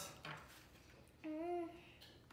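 A person briefly hums a single note, about half a second long, a little over a second in, against a quiet room.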